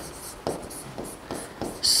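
Handwriting on a board: a series of short scratching strokes as words are written.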